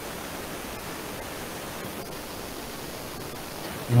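Steady hiss of background noise on a voice-call microphone, even and unchanging, with no other events.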